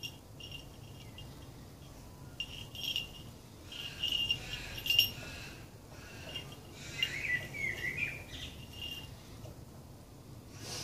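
High insect trills, like crickets, come and go in stretches, and a bird gives a warbling call about seven seconds in. A sharp click about five seconds in is the loudest moment.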